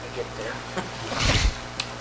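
A brief rustling thump about a second and a quarter in, as pages of a thick paper report are flipped over on the table, with a faint murmur of voices just before it.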